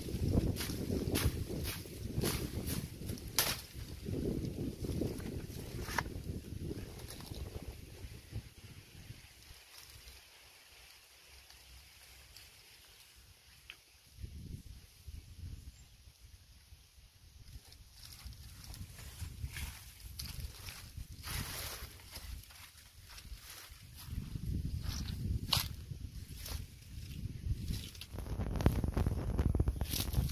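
Grass and reeds rustling, with scattered sharp clicks, as someone works with their hands at a swamp's edge. A low rumble of wind on the microphone comes and goes; it is loudest at the start and near the end and drops away in the middle.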